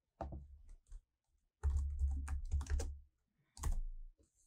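Typing on a computer keyboard in short bursts: a few keystrokes, then a quicker run of keys about one and a half seconds in, and a last keystroke near the end.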